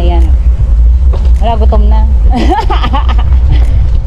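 Wind buffeting the microphone of a camera on a moving bicycle, a steady low rumble, with a person's voice in short snatches over it.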